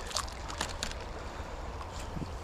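Small creek running over a shallow riffle: a steady rush of flowing water with a low rumble underneath and a few light ticks in the first second.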